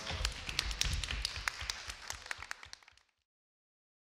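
A small audience applauding, irregular claps that fade out and stop about three seconds in.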